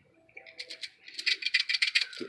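A dove cooing faintly in the first second, then a quick, dense clatter of toothpicks rattling in a small plastic dispenser through the second half.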